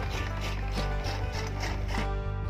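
Iron gear drive of an animal-powered chaff cutter (toka machine) turning, its gear teeth clattering and ratcheting in quick, irregular bursts.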